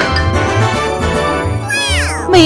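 Upbeat background music with a steady, regular beat; near the end a high sound effect glides steeply down in pitch.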